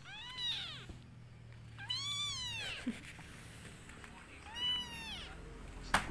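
A one-month-old kitten meowing three times, high-pitched calls that rise and then fall in pitch, about two seconds apart. A sharp click comes right at the end.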